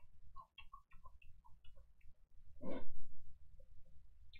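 Close-up eating sounds of a man chewing a mouthful of food: small wet clicks and smacks from the mouth, with one louder mouth noise about three seconds in.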